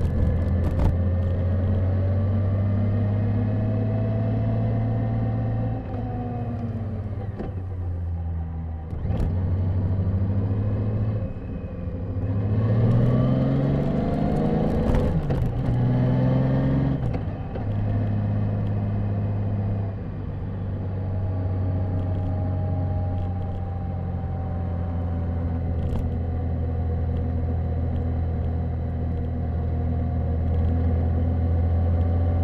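Honda GL1800 Goldwing's flat-six engine running under way on the road, heard from the rider's helmet. It holds a steady note for most of the time. About halfway through its pitch rises and drops back twice as the bike accelerates through the gears.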